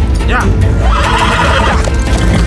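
A horse whinnying: a short rising call, then a longer quavering whinny about a second in, over background music.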